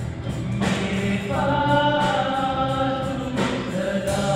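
Live student band: a male singer holding long sung notes over electric bass, acoustic guitar, keyboard and drums.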